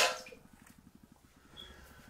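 A short, sharp breathy vocal burst from a person at the very start, an exaggerated exhale, then quiet room tone.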